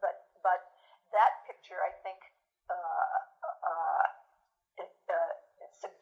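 Speech only: a woman talking, with short pauses and a drawn-out stretch in the middle.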